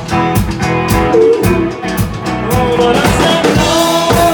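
Live rock band playing: a drum kit keeps a steady beat under electric guitar.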